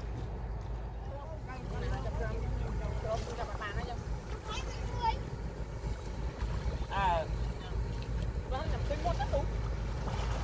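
People's voices talking and calling out across the water over a steady low rumble of wind on the microphone, with one louder call about seven seconds in.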